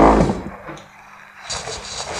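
A thump with a short creak or scrape as someone sits down at a wooden desk, then a rustling, like book pages being handled, from about a second and a half in.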